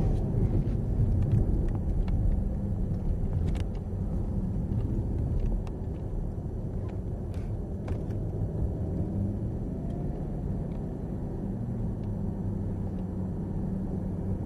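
Cadillac CTS-V's V8 engine and road noise heard inside the cabin at moderate track speed. The sound eases off about halfway through as the car slows.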